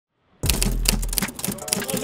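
Rapid, irregular typewriter-like clicking over a steady deep bass note, an edited intro sound effect and music bed. It starts suddenly about half a second in.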